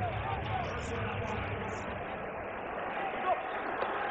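Steady crowd noise in a football stadium: a broad, even hubbub of many voices with no single sound standing out.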